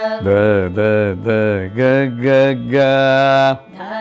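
A man's low voice singing a short Carnatic vocal phrase of about five sustained notes with gliding ornaments, the last held for about a second before it stops near the end.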